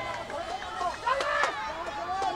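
Several players' voices shouting and calling across an outdoor football pitch, with a couple of sharp knocks of the ball being kicked near the middle.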